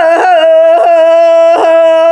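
A woman singing a Sakha toyuk, holding one steady, unchanging note. Three times the note is broken by a short throat catch, the kylyhakh ornament typical of toyuk.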